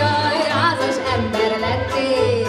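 Hungarian folk song sung by a woman with a strong vibrato, accompanied by a folk band of fiddles, accordion, cimbalom and double bass, the bass keeping a steady beat about twice a second.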